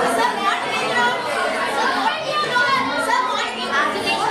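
A classroom full of schoolchildren chattering, many voices talking over one another at once.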